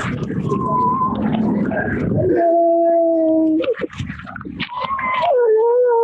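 Emotional wailing cries at a reunion: long held cries that waver and slide down in pitch, after a jumble of excited voices in the first two seconds.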